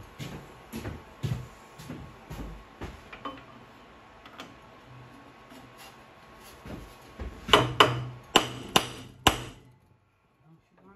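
Brass hammer striking at a small engine's flywheel, with a bar wedged under it, to shock the flywheel loose from the crankshaft. A few light taps come first, then a quick run of about five hard, ringing blows near the end.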